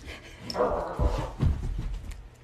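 Husky-type dog barking and vocalizing for about a second, starting about half a second in, with a couple of thumps of paws and bodies on the floor as the dogs lunge.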